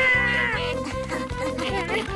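Cartoon background music with a steady beat, opening with a short high-pitched squealing cry from a cartoon character that wavers and trails off in the first half second.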